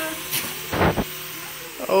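Steady low hum of the light-up toys' small electric motors, with a brief loud rushing thump a little under a second in.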